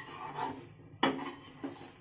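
Metal spatula scraping around a metal kadhai as it stirs soya chaap pieces through thick masala, in several rasping strokes, the sharpest about a second in.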